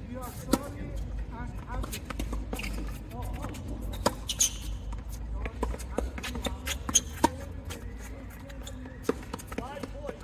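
Tennis rally: sharp pops of a tennis ball struck by the strings of a Babolat Pure Aero Rafa Origin racket strung with Diadem Solstice polyester at about 53 lb, alternating with ball bounces on the hard court and quieter distant hits. The loudest strikes come about half a second in and twice in quick succession around seven seconds.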